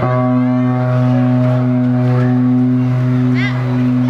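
Live band of electric guitars and bass holding one long, steady chord, a low bass note with higher notes ringing above it, for about four seconds.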